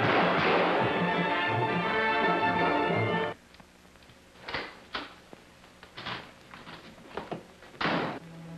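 Orchestral film-score music that breaks off abruptly about three seconds in. A quieter stretch follows with several short knocks and thuds, spaced irregularly, the loudest near the end.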